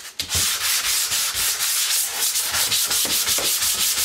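A 240-grit sanding sponge rubbed by hand over a painted wooden cabinet door in quick back-and-forth strokes, starting a moment in. It is scuff-sanding the old finish so the new paint has something to grab onto.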